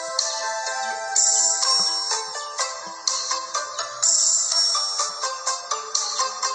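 Music: a melody played on a hand-held Hmong pipe over an electronic backing track, with a bright crash-like accent about every three seconds.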